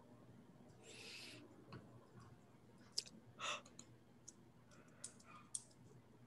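Near silence, broken by a few faint scattered clicks and short rustling noises.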